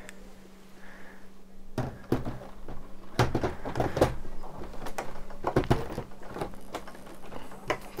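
Irregular light clicks and knocks of plastic building bricks and parts being handled on a table, starting about two seconds in.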